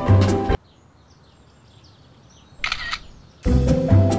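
A bright jingle with drums cuts off half a second in. In the quiet that follows, a single camera shutter sound clicks about two and a half seconds in, and the jingle starts again near the end.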